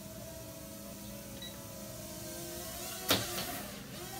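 Small toy quadcopter drone's motors and propellers whirring with a steady whine as it flies. A single sharp knock comes about three seconds in.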